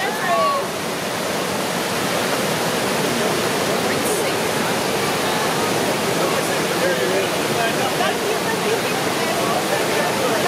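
Whitewater pouring over a river weir, a steady, even rush of churning water.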